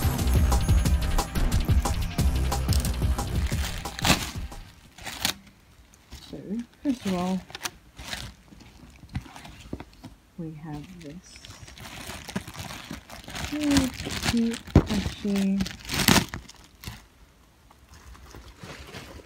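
Plastic bubble-wrap packaging crinkling and rustling as it is handled and unwrapped, in a run of short scratches. Music plays over the first few seconds.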